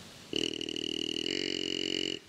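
Whitetail deer grunt call blown by the hunter to bring in a buck: one drawn-out grunt of nearly two seconds, starting sharply and cutting off suddenly, its tone changing partway through.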